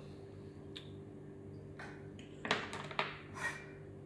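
Multimeter probe tips clicking and scraping on the conformal coating of an LED driver circuit board: one click about a second in, then a few short scratches in the second half, over a steady low electrical hum.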